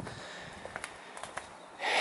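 Low background hiss with a few faint footsteps on concrete through the middle, and a breath drawn in near the end.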